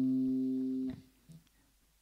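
A single low note on an archtop electric guitar, the C at the third fret of the A string, ringing and slowly fading. It is cut off abruptly about a second in as the string is damped.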